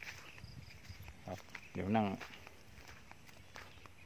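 Footsteps on grass and bare earth: soft, irregular scuffs and rustles, with a short spoken phrase about two seconds in.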